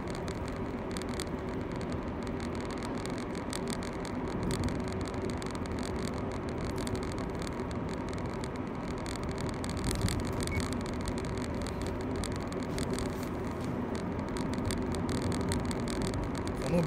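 Steady engine and tyre noise of a car cruising at an even speed, heard from inside the cabin.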